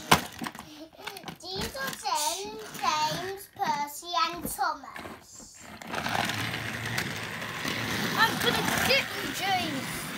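Children's voices for about the first five seconds. Then a battery-powered Thomas & Friends toy engine (James) is switched on and runs steadily along plastic track, a continuous motor-and-wheels noise lasting to the end.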